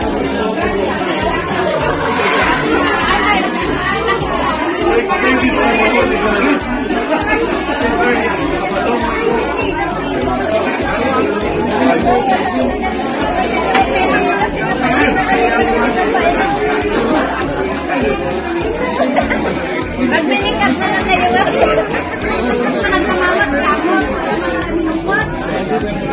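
Many people talking over one another in a room, a continuous babble of conversation, with music playing underneath.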